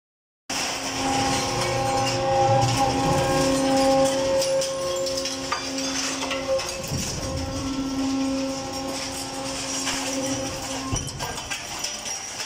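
Steel pan conveyor running loaded with scrap metal: a steady machine hum of several held tones over a rattle of metal, with one sharp knock near the end.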